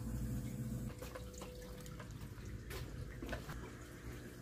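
Faint water trickling and dripping in a reef aquarium, with scattered small drips from about a second in, over a low steady hum.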